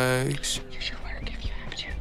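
A held sung note from the song ends about a third of a second in. A quieter break follows, with low bass and a soft whispered vocal.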